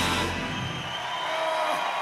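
Live concert music with an audience cheering. The band's low end fades out about a second in, leaving crowd noise.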